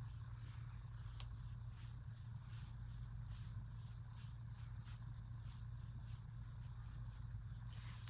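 Chip brush dry-brushing paint onto a sealed, painted tabletop: faint, quick bristle swishes, about three strokes a second, over a steady low hum.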